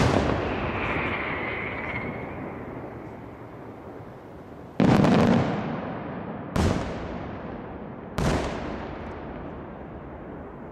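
Aerial firework shells bursting: a sharp bang right at the start, then three more about five, six and a half and eight seconds in. Each bang is followed by a long echoing fade.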